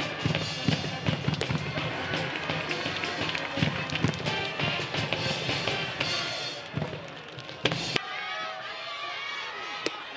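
Stadium cheering music: a brass band and drums, with crowd voices mixed in. A couple of sharp knocks stand out near the end, and the heavy drumming stops about eight seconds in.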